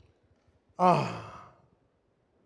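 A man sighing once into a handheld microphone, a breathy voiced exhale that falls in pitch, about a second in.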